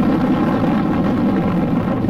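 A loud, steady, distorted low rumble from an edited sound effect.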